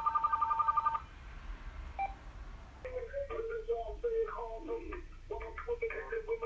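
VTech CS6649 base phone ringing with an electronic two-tone warbling ring that stops about a second in, followed by a short beep. From about three seconds in, the call audio, music played for the bass test, comes through the base's speaker thin and tinny, with almost nothing in the low end.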